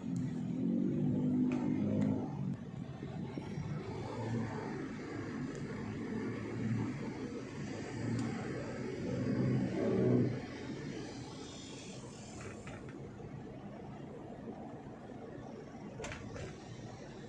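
Vehicle driving in city traffic: steady engine and road noise, with the engine swelling louder in the first two seconds and again about ten seconds in.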